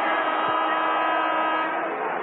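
Basketball arena crowd noise with a steady, held electric horn tone sounding over it as play stops, the horn fading out near the end.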